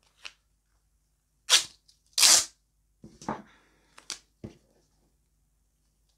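Adhesive tape being pulled off its roll and torn: a series of short ripping sounds, the loudest two about one and a half and two seconds in, followed by a few softer, shorter ones.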